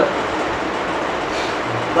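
Steady background noise, an even hiss with no distinct events.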